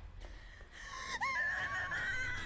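A young woman's high-pitched angry scream, beginning about a second in and still going at the end.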